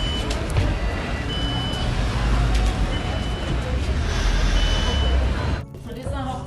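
Street traffic with a steady engine rumble, and a short high electronic beep repeating about every second and a half. The sound drops out briefly near the end.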